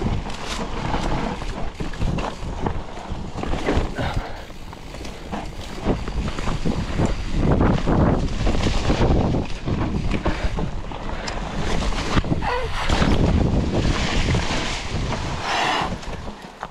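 Mountain bike riding fast down a dirt trail: wind buffeting the microphone, tyres rolling over dirt and fallen leaves, and repeated knocks and rattles from the bike over bumps.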